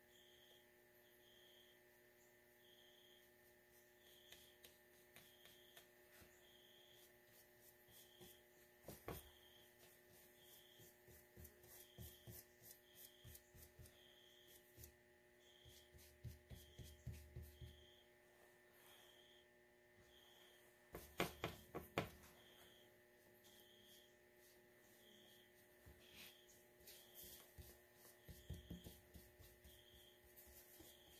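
Near silence: faint room hum, with soft scratches and taps of a wet paintbrush working watercolour on paper, loudest in a short cluster about two-thirds of the way through. A faint high blip repeats about once a second throughout.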